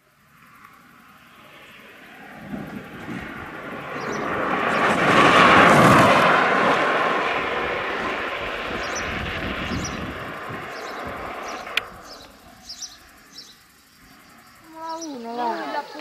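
A gravity kart with no engine rolls past on the asphalt, its tyres and chassis making a rushing hiss that swells to a peak about six seconds in and then fades as it goes away.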